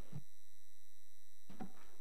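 Steady electrical hum and thin high-pitched whine from the chamber's microphone and sound system, with no speech. Two soft low thumps come just after the start and again near the end.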